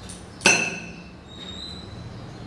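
A chef's knife blade knocks once against a ceramic plate about half a second in while cutting broccoli florets, and the plate rings briefly after the strike.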